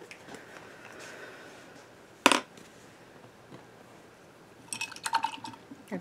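Plastic acrylic paint bottle being opened and squeezed: a sharp click from the cap about two seconds in, then a short spluttering squirt of paint from the nozzle near the end.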